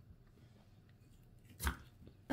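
Hands working cornstarch-and-water oobleck in a glass bowl: mostly quiet handling, with one short thud about one and a half seconds in.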